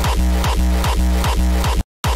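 Distorted hardstyle kick drum hitting on every beat at 150 BPM, each hit a punchy thump with a falling pitch sweep, over a sustained deep bass. The loop cuts off suddenly near the end.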